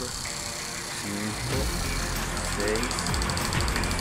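A man counting slowly aloud in Spanish, one number every couple of seconds ("cinco… seis"), over a steady low rumble of passing road traffic.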